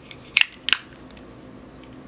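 Two sharp plastic clicks, a third of a second apart, from a black plastic MAC eyeshadow case being pressed together and closed by hand.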